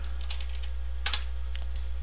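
Typing on a computer keyboard: a few light keystrokes, then a sharper one about a second in and a couple more after, over a steady low hum.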